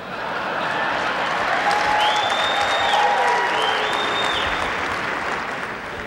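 Studio audience applauding. The applause swells in the first second, holds steadily, and eases near the end, with a few high held calls over it in the middle.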